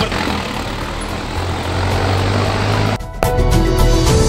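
An engine running steadily under a noisy hiss; about three seconds in it cuts off suddenly and background music begins.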